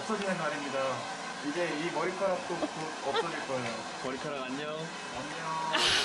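A hand-held hair dryer blowing steadily under talking.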